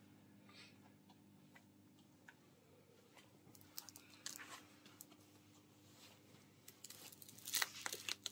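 Faint rustling and crinkling of a sheer nylon stocking being handled before it is put on, with a few soft clicks, loudest about four seconds in and again near the end, over a faint steady hum.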